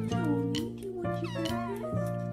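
A young tabby kitten meowing, two rising-and-falling meows, over background music.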